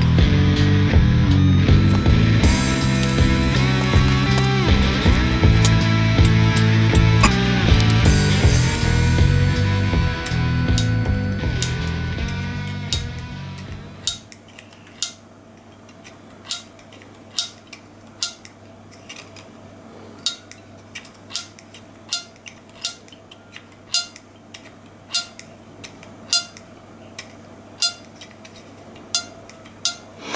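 Background music with a bass line, fading out about halfway through. Then a series of short, sharp plucks, one roughly every 0.7 s, as the brass reeds of a Hohner Sonny Boy harmonica are flicked with a small screwdriver tip to test whether they sound again.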